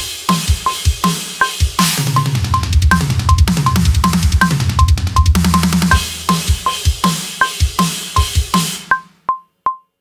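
Rock drum kit with TRX cymbals playing a metalcore fraction-fill groove and fill at 160 beats per minute: kick drum, snare and crash cymbals, densest in the middle. Over it runs a metronome click at the same tempo, a higher tick marking each bar's first beat. The drums stop about nine seconds in and the click goes on alone.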